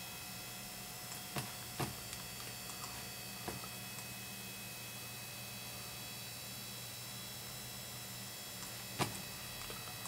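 Steady electrical hum with a few short sharp clicks, two close together about one and a half seconds in, another at three and a half seconds and one near nine seconds, typical of a computer mouse clicked while adjusting points frame by frame in the editing software.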